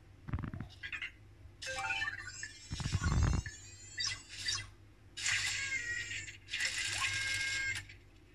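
Anki Vector robot playing its electronic sound effects in answer to a "Happy New Year" voice command. A few clicks are followed by chirps and falling whistles with a low thump about three seconds in, then two bursts of crackling noise, the second with a held beep.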